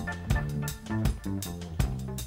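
Live reggae band playing an instrumental passage with no vocals: a bass line under guitar and drums.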